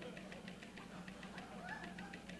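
Dead air: a steady low hum with a faint, rapid, regular ticking, about six or seven ticks a second, and faint wavering sounds in the background.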